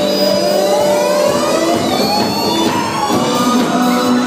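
Loud live band music from amplified guitars and keyboards, with one sustained pitched sweep rising steadily over about three seconds.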